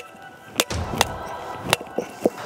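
A hardened-steel ESP telescopic baton knocking against brick and stone: four or five sharp metallic knocks in two seconds, each with a brief ring.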